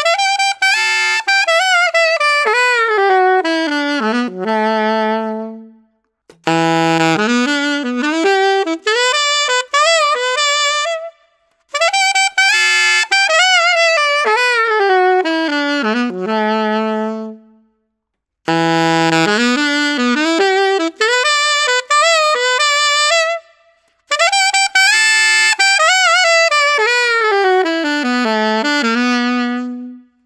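Yamaha alto saxophones, the YAS-280 and then the YAS-62, played loudly with a hard, edgy tone, with a lot of air pushed through the horn. There are five phrases with short pauses between them, several running down to a held low note.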